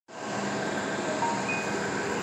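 Steady droning background noise with a faint hum.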